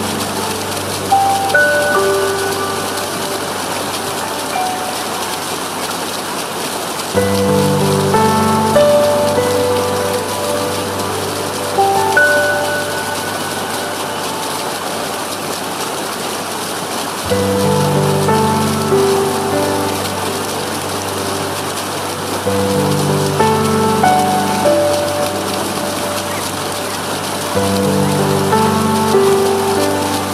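Slow, gentle relaxation music, scattered soft melodic notes over low sustained chords that come and go, laid over the steady rush of flowing water.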